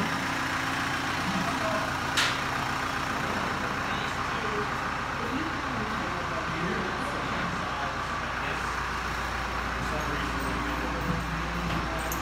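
Steady hum of an engine running in the background, with faint distant voices and one sharp click about two seconds in.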